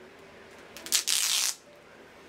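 White duct tape being ripped: a few small crackles, then one rasping rip of under a second, about a second in.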